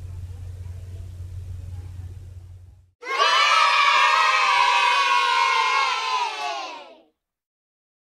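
A group of children cheering and shouting together for about four seconds, starting suddenly about three seconds in and cutting off abruptly. Before it there is only a low steady hum of room tone.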